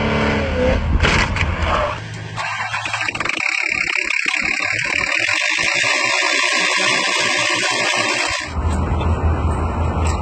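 A car engine running hard during a burnout with tyre noise. About two seconds in it cuts to an engine's belt drive and crank pulley turning, with a steady hiss and irregular light ticking. Near the end a low hum takes over.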